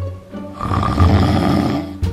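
A man snoring, with one long snore from about half a second in to near the end, over background music.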